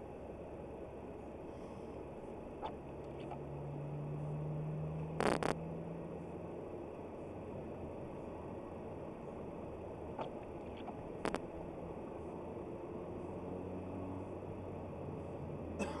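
A car driving, heard from a windscreen dashcam inside the cabin: steady engine and tyre noise, with the engine's low hum rising for a couple of seconds about four seconds in. A few sharp knocks stand out, the loudest a double knock about five seconds in.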